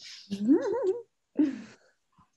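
A woman laughing softly: a breath, then a laugh whose pitch rises and wavers, and a shorter falling one about a second and a half in.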